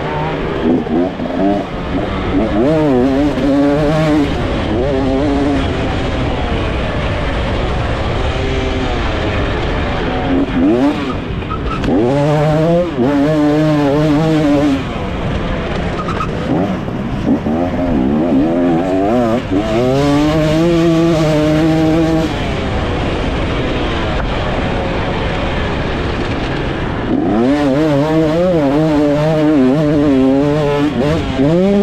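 A KTM SX 250 two-stroke motocross bike's engine, heard close up from the bike itself as it is ridden hard. Its pitch climbs again and again as the throttle is opened and drops back between, over steady wind and riding noise.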